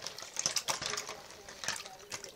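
Small plastic Littlest Pet Shop figurines clicking and clattering against each other in a sink of soapy water as a hand rummages through them to grab a bar of soap.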